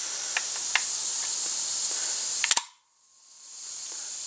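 Small metallic clicks of an SKB Ithaca 900 shotgun's bolt and shell carrier being worked by hand, over steady hiss, with two sharper clicks about two and a half seconds in; right after them the sound cuts out abruptly and fades back in.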